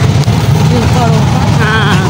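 Auto-rickshaw engine running steadily as the rickshaw moves along a bumpy street, heard from inside the rickshaw. Near the end a voice lets out a long, wavering "aaa".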